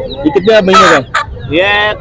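A chicken gives one short, rough squawk about half a second in while it is being held and handled.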